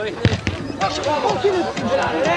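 A soccer ball kicked hard, a sharp thud about a quarter second in, followed by voices shouting on the pitch.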